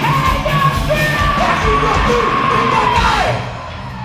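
Heavy metal band playing live in a hall, the singer holding one long high note over guitars and drums. The note slides down and ends about three seconds in, and the band drops back with it.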